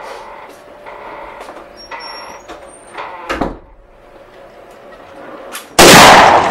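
A single loud gunshot near the end, sudden and lasting about half a second as it dies away, after a stretch of quiet room noise with a few small knocks and footsteps.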